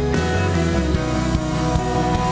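Live worship band playing an instrumental passage: acoustic guitars and electric bass over a drum kit keeping a steady beat.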